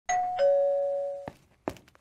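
Two-tone doorbell chime, a higher note then a lower one (ding-dong). The lower note rings on for most of a second and then stops short, followed by a couple of faint taps.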